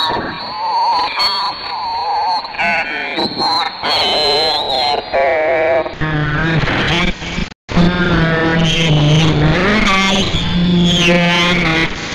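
Electronic sound collage of warbling, pitch-bent voice-like tones. A steady low hum comes in about halfway, and the sound cuts out completely for an instant shortly after.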